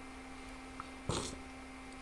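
Quiet pause in a recorded lecture: faint room tone with a steady low hum, broken about a second in by one short rush of noise, like a breath.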